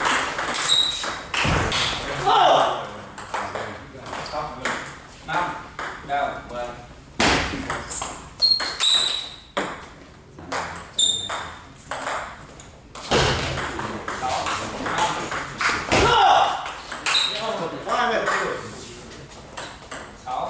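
Table tennis rallies: the ball clicking sharply against the bats and the table in quick runs of hits, with short breaks between points.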